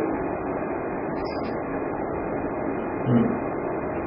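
Steady background room noise in a pause between speech, with a short murmured 'hmm' about three seconds in.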